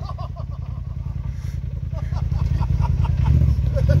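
Side-by-side UTV engine running with a low rumble, its revs and loudness rising near the end as throttle is applied.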